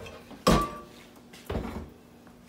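A metal ladle knocking against an enamel pot: a sharp clank with a brief ring about half a second in, then a softer knock about a second later.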